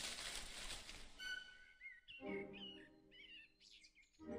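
Soft animation soundtrack music. A swish fades out over the first second, then a few short, wavering, bird-like chirps come in about halfway through.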